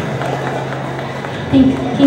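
A low steady hum from the stage sound system under the noise of a crowded hall, then a woman's voice over the microphone about one and a half seconds in.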